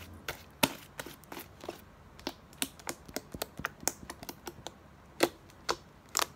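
Slime being squeezed and pressed by fingers, giving irregular sharp clicks and pops, several a second, with a louder pop about half a second in and another just after five seconds.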